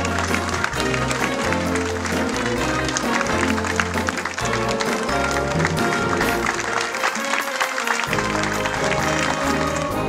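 Town wind band playing a lively tune with a stepping bass line, while the audience applauds.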